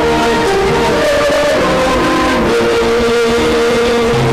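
Live church music: singing with instrumental accompaniment, moving in long held notes.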